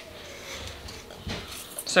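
Quiet, faint rustling of salt sprinkled by hand through a stainless steel funnel into a glass jar, with a soft tap a little past the middle.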